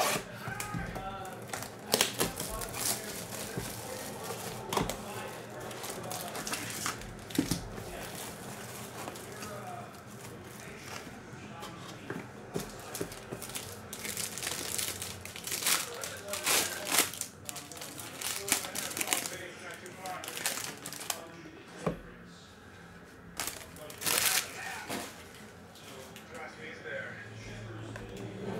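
Clear plastic wrapping on a box of baseball cards crinkling and tearing as it is handled and pulled off, with irregular crackles and a few louder rustles.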